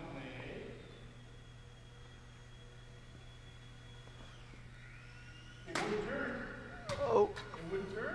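Faint steady high whine of the Champ micro RC plane's electric motor and propeller in flight, its pitch sliding down about four seconds in. About six seconds in comes a sharp knock, followed by a voice.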